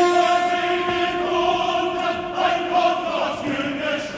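An 18th-century opera chorus singing in German, holding sustained chords.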